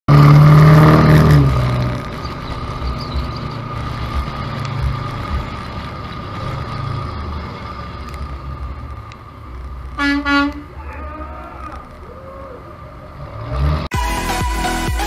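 Steady road and wind noise of a pickup towing a car at highway speed, loudest in the first second or so. About ten seconds in, a vehicle horn sounds twice in quick succession, and the noise cuts off abruptly just before the end.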